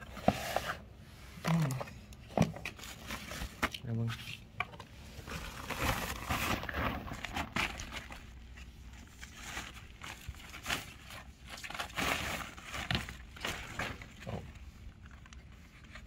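Thin plastic bag rustling and crinkling, with scattered handling clicks, as hands unwrap a camcorder from it. The crinkling is busiest in the middle part.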